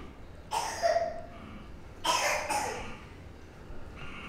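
A woman coughing twice, two short coughs about a second and a half apart.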